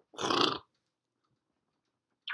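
A single short throat noise from a man, lasting about half a second just after the start, then quiet.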